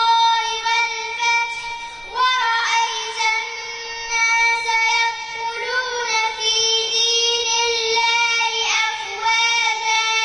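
A young girl chanting Quran recitation into a microphone in a high voice, drawing out long ornamented notes in melodic phrases with short pauses for breath between them.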